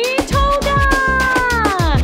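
Birthday song music with a steady beat; a long voice-like note rises at the start, is held, and slides down near the end.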